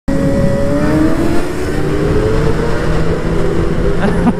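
Motorcycle engines running at road speed, a Suzuki GSX-R750 inline-four sport bike alongside the camera bike, with a steady engine note that slowly drops in pitch.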